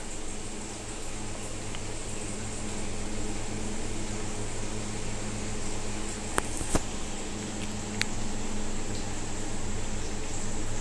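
A steady fan-like mechanical hum with background hiss, broken by a few faint clicks about six to eight seconds in.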